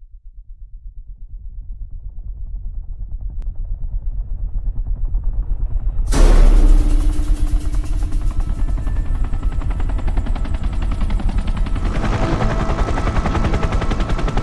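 Helicopter rotor chop, a fast, even thudding that fades in from silence and grows steadily louder. About six seconds in it jumps to a sudden loud hit, then carries on at that level.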